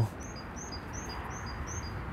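A small songbird singing a quick two-note phrase, a high note then a slightly lower one, repeated about five times over a steady outdoor hiss.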